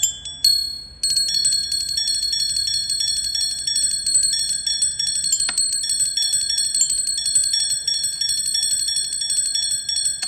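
Mallets striking the tuned bars of a sonic sculpture, giving bell-like ringing tones. A few separate strikes come first, then about a second in a fast, unbroken roll of strikes keeps several high notes ringing, with one sharper knock near the middle.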